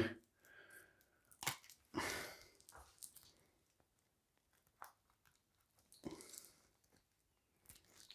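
Faint, scattered sounds of a stuck game card being cut and pried free of its cardboard with a knife: a few short clicks and brief tearing rustles, with near silence between them.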